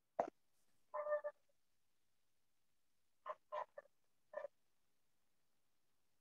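Faint, clipped voice sounds coming over a video call: a short murmur about a second in, then four quick syllable-like blips between about three and four and a half seconds, with dead silence between them.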